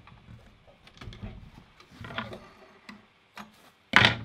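Small clicks and fabric rustling as stitched cotton is pulled out from under a home sewing machine's presser foot, the machine not running. One sharp click, the loudest sound, comes at the very end.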